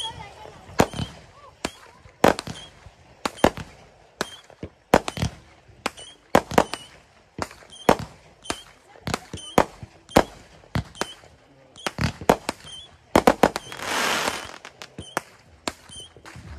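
Fireworks going off: a string of sharp bangs, irregularly spaced at about one or two a second, with a longer hissing rush near the end.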